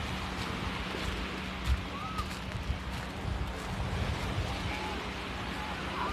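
Small surf waves washing onto the beach, with wind buffeting the microphone. A faint steady low hum runs under it, and faint distant voices come through now and then.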